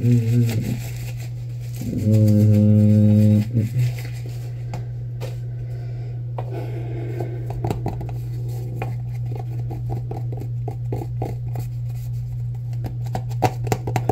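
Steady low hum throughout. A man hums a held note near the start and again for about a second and a half around the two-second mark. Then there are light clicks and crinkles of a plastic toothpaste tube being handled.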